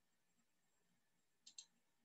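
Near silence, with two faint quick clicks close together about one and a half seconds in.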